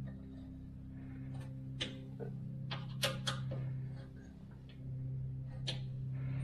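Scattered light metallic clicks of hand tools: a ring of hex keys clinking as a bolt is worked into a threaded insert on the car's front support, over a steady low hum.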